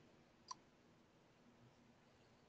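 Near silence, with a single short click about half a second in.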